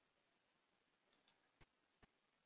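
Near silence, with a few faint short clicks a little past halfway through.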